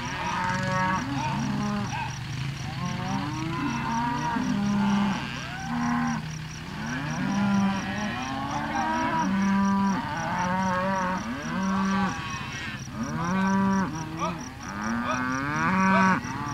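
A herd of cattle mooing over and over, many overlapping long calls one after another as the herd is driven along, with a steady low drone underneath.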